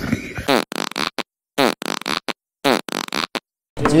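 Fart noises in three choppy clusters about a second apart, each cut off abruptly into dead silence.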